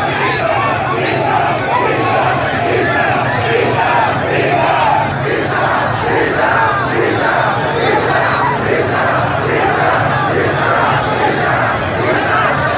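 A large crowd of protesters shouting together, many voices overlapping, with the chant "bisharaf" ("dishonourable") hurled at security forces.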